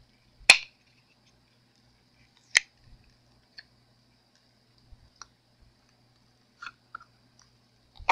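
Silicone mold being flexed and peeled off a cured epoxy-resin casting: two sharp snaps about two seconds apart as the silicone lets go, then a few faint ticks and crinkles.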